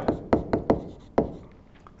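A pen stylus tapping and clicking on a tablet surface while handwriting: about five sharp taps in the first second or so, then a few fainter ones.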